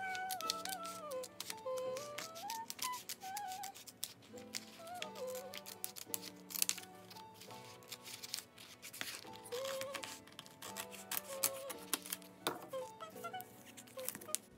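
Background music with a gliding melody over held notes, and scissors snipping again and again through tape-laminated paper, heard as short sharp clicks throughout.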